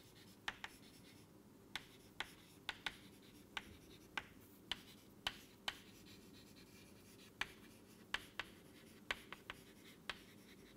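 Chalk writing on a chalkboard: faint, short taps and scratches of the chalk stick, coming irregularly about two a second as the letters are formed.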